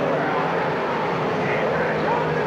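Dirt modified race cars racing past on a dirt oval, their engines a loud, steady din.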